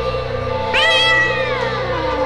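A cat meows once, long and falling in pitch, starting about a second in, over steady background music.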